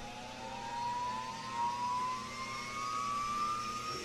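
Jet engine spooling up: a whine that rises slowly and steadily in pitch over a steady rushing noise, standing in for a PC with a new RTX 4090 graphics card powering on.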